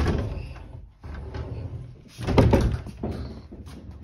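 Wooden closet doors being handled: a bump and rattle as they are opened at the start, then a louder knock just past two seconds in.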